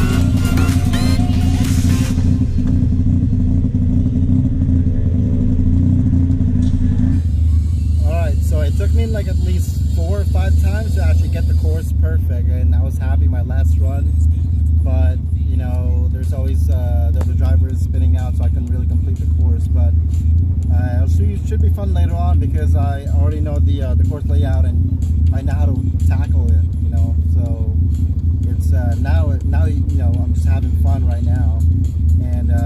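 Background electronic music with a heavy, steady bass line. From about seven seconds in, a voice runs over the music.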